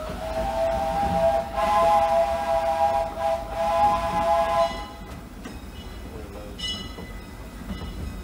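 Disneyland Railroad steam locomotive's whistle blowing one long chord of several notes for about four and a half seconds, with a rush of steam hiss through most of it, then cutting off. After it the train keeps rolling along, quieter.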